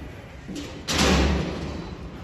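A single loud metal bang about a second in, then a short echo dying away in the indoor arena: the steel roping chute's gate slamming open to release a steer.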